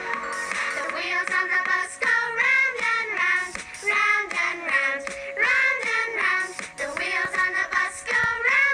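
A children's song: a high, childlike singing voice over backing music, the melody starting about a second in.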